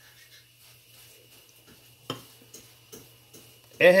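Faint steady hum in a quiet kitchen, with a single sharp knock about halfway through and a few soft ticks after it, from kitchenware (the blender jar and a drinking glass) being handled on the counter.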